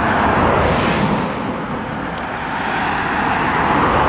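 Road traffic passing close by: a steady rushing of tyres and engines that eases a little mid-way and swells again near the end.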